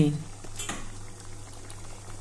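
Moong dal with bitter gourd simmering in a steel kadai, bubbling faintly over a steady low hum, with a faint tap about half a second in.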